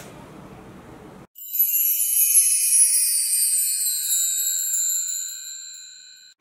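Bright, high-pitched transition chime sound effect: several ringing tones with a slowly falling shimmer above them, starting about a second and a half in and fading out over about four seconds. Faint room tone comes before it.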